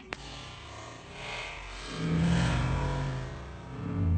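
A dog growling low, in two swells: the first starts about two seconds in and the second near the end.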